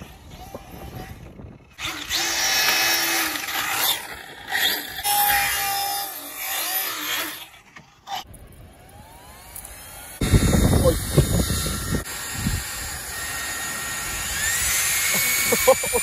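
Arrma Infraction RC car running on 8S, its electric motor whining and rising in pitch as it accelerates, about nine seconds in and again near the end. From about ten seconds in there is a loud rumble as it drives.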